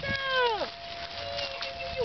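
Cimarron Uruguayo puppy whining: one call that falls steeply in pitch over under a second, then a softer, longer, steadier whine near the end.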